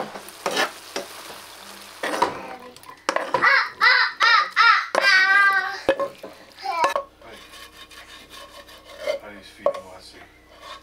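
Ground meat sizzling in a nonstick skillet while a spatula stirs and scrapes it. Midway comes a run of loud, high, wavering squeaks as the meat is scraped out of the skillet into a saucepan, followed by light clicks of utensils and pans.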